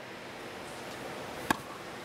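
A tennis racket strikes a tennis ball once, a single sharp pock about one and a half seconds in, over the steady hiss of a large hall.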